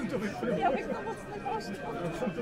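A small crowd's chatter: several people talking at once in low, overlapping voices.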